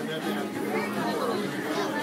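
Steady background chatter of many diners talking at once in a busy restaurant.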